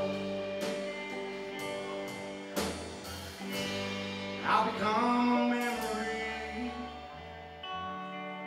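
Live rock band playing: two electric guitars, electric bass and drum kit, with sustained guitar notes and cymbal crashes about once a second in the first half.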